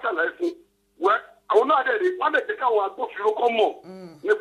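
A person talking in short phrases with brief pauses; the voice sounds narrow, like a phone line, over a faint steady hum.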